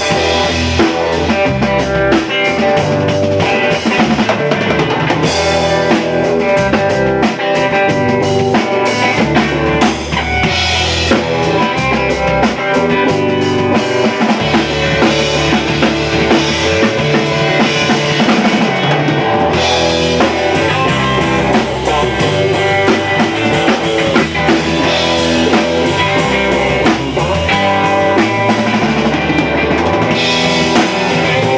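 A rock band playing live in a room, with a drum kit and electric guitar, in an instrumental passage with no singing. The playing stays loud and continuous throughout.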